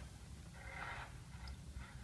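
Quiet room tone with a faint steady low hum, and a soft faint rustle about a second in.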